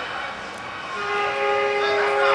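A vehicle horn sounding one steady two-tone blast, starting about a second in and still going at the end.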